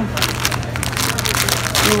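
Plastic packet of dried lasagna sheets crinkling as it is handled, a quick irregular run of crackles over a steady low hum.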